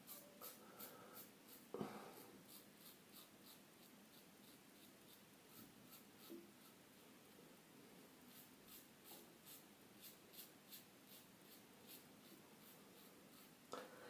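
Faint, dry scratching of a Rubin-1 adjustable safety razor, set at nine, cutting through lathered four-day stubble in short repeated strokes, about two a second, with one sharper stroke about two seconds in.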